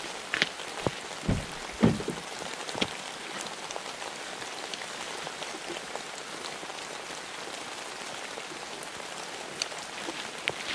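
Steady rain falling, with a few footsteps on wet gravel in the first three seconds.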